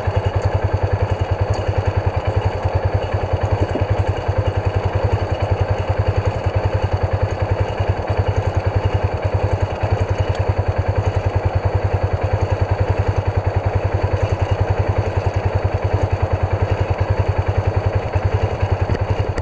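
Polaris side-by-side's engine idling: a steady low running sound with an even, rapid pulse.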